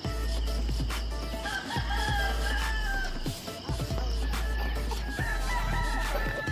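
A rooster crowing twice, once about a second and a half in and again near the end, each call long and held. Background music with a steady low bass runs underneath.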